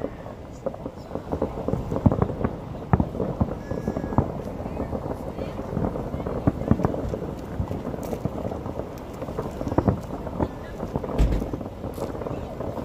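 Distant New Year's fireworks going off in a thick, irregular run of pops and bangs, with a few louder booms about two seconds in and near the end.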